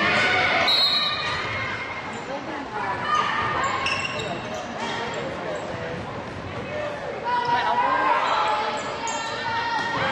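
Live basketball game sounds in a gym: a basketball bouncing on the hardwood, short high sneaker squeaks, and players' and spectators' voices echoing in the hall.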